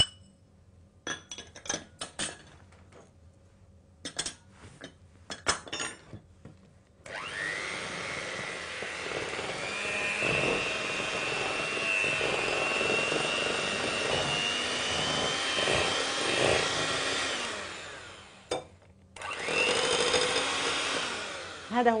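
A spoon clinks and scrapes against a glass bowl for the first several seconds. Then an electric hand mixer starts with a rising whine and runs steadily for about ten seconds, beating a glaze (icing) in the glass bowl. It winds down, then runs again briefly near the end.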